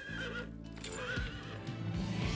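A horse neighing, with hooves clattering, over film music that comes in with steady held low notes.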